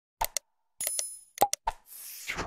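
Sound effects of an animated like-and-subscribe button: quick pairs of mouse-click pops, a short bright bell ding about a second in, and a whoosh near the end.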